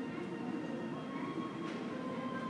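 Steady ambience of a large, near-empty airport terminal hall: an even low hum with faint sustained tones above it. There is a brief hiss near the end.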